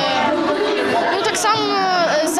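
A person talking over the chatter of a crowd in a large, echoing sports hall.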